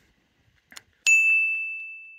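A single bright bell ding, struck about a second in after a faint click, ringing one clear high tone that fades away slowly.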